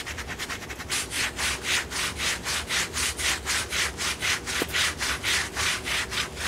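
Quick, even back-and-forth scrubbing of grimy bicycle handlebar tape with a cleaning paste, about three to four strokes a second, starting about a second in.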